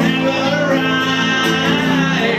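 A man singing into a microphone while playing an acoustic guitar, holding long sung notes over the guitar.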